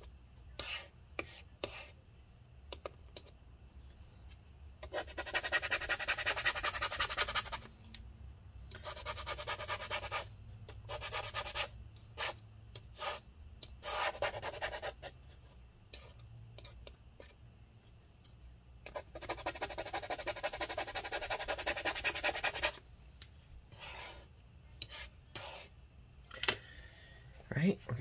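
Blue plastic scraper scrubbing battery adhesive residue, softened with isopropyl alcohol, off a MacBook Pro's aluminium bottom case. The scraping comes in several bursts of fast back-and-forth strokes, the longest lasting two to four seconds, with light taps and clicks between them.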